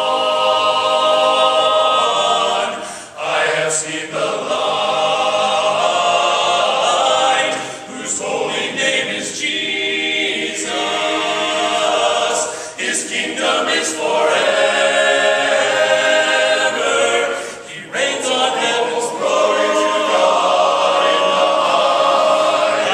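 Men's barbershop chorus singing a cappella in close harmony, with three singers leading at the front. Long held chords with short breaks between phrases every four to five seconds.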